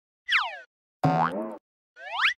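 Cartoon sound effects of an animated studio logo ident: a quick downward whistle-like glide, then a springy pitched sound lasting about half a second, then a quick upward glide starting near the end.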